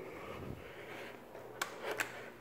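An Otis Series 1 elevator hall call button being pressed: a sharp click about one and a half seconds in and another near the end, over a low steady hum.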